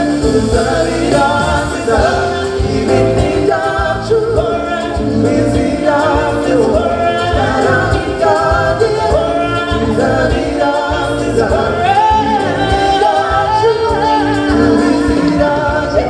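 A live band playing with a woman singing lead into a microphone, her melody over keyboards and drums with a steady beat.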